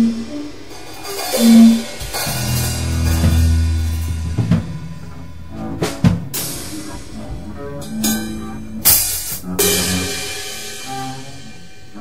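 Free-jazz drum kit played loosely, with irregular cymbal crashes that ring out and bass-drum and snare hits, over a few low upright bass notes.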